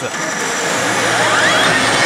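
Pachislot machine ('HEY! Elite Salaryman Kagami') playing a bonus-anticipation effect flagged as very hot. A dense wash of machine sound carries a low steady hum and a whistle-like tone that sweeps upward in pitch over the second half.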